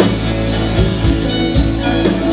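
Live indie rock band playing an instrumental passage, with electric guitars, keyboard, bass and drum kit, and no vocal.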